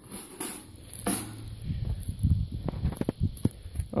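Irregular rustling and crackling of dry, matted grass being trodden and brushed, with a string of short crunches about halfway through.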